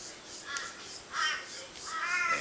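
A bird calling twice: two short calls about half a second and just over a second in.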